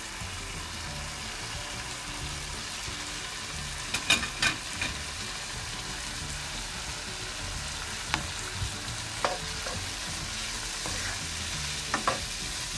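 Sautéed onion, tomato and garlic sizzling steadily in a nonstick pan. About four seconds in there is a brief cluster of clicks and knocks as shredded chicken goes in, and a few single taps later on.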